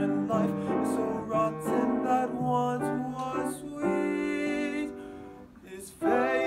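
Piano accompaniment playing an interlude between sung phrases: struck notes and chords ringing and decaying, with a held chord about two-thirds of the way through that fades away near the end.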